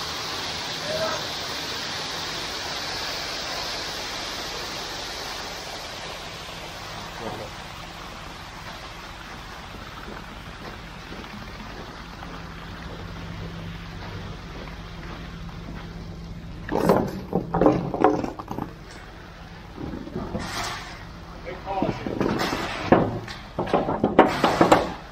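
Wet concrete sliding down a ready-mix truck's chute and spilling onto the floor: a steady hiss that fades over the first several seconds. The mixer truck's engine hums underneath, and voices come in during the last several seconds.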